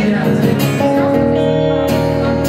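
Live acoustic and electric guitars playing together, strummed chords ringing on with a chord change about a second in.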